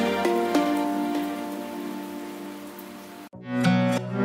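Background music: the last held notes of one track fade out over a steady hiss, then a new, gentler track cuts in about three seconds in.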